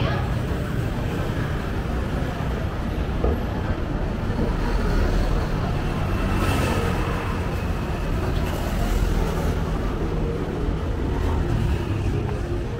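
Street traffic: a steady low rumble of motorbikes and cars running along the road, with vehicles passing by, mixed with the voices of people nearby.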